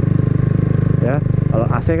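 Kawasaki W175's carbureted single-cylinder engine running steadily at low road speed, heard from the rider's seat.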